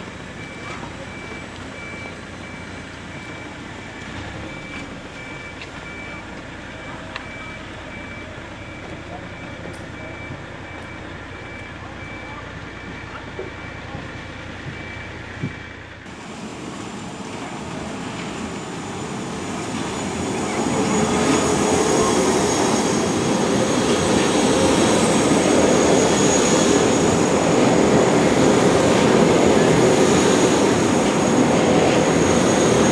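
Jungfraubahn electric rack-railway trains running past, with a steady high whine in the first half. About halfway there is an abrupt change, then a louder train sound builds over a few seconds and stays loud as the cars pass close by.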